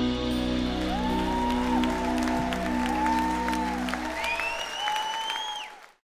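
The band's final chord on keyboard and acoustic guitar rings out under audience applause and whoops. The chord dies away about four seconds in, leaving the clapping and cheering, and the sound cuts off suddenly at the very end.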